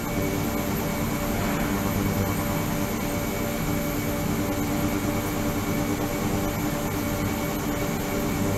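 Ultrasonic water tank running with its 28 kHz and 72 kHz transducers and liquid circulation system: a steady hum and hiss with several fixed tones held throughout, no change in level.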